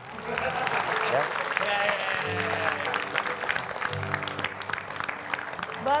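Studio audience applauding, with voices in the crowd, and a short piece of music joining in about two seconds in.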